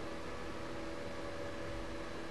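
Steady, faint background hiss with a faint steady hum under it: room tone of the recording, with no distinct sound event.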